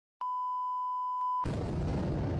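A steady electronic beep held for just over a second, with a faint click at its start and near its end. It is followed by a low, noisy rumble that comes in abruptly about a second and a half in.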